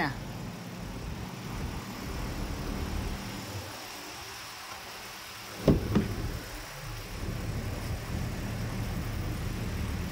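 Chery Tiggo 5X's engine idling steadily after a remote start. About six seconds in there are two sharp clicks as the driver's door is unlatched and opened.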